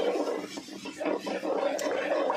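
A metal spatula stirring and scraping a thick frying spice paste (masala) in a wide aluminium pan, in quick irregular strokes.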